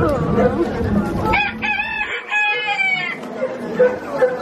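Recorded rooster crowing played from the ride's farm scene: one cock-a-doodle-doo lasting about two seconds, starting about a second and a half in. Faint voices of riders can be heard before it.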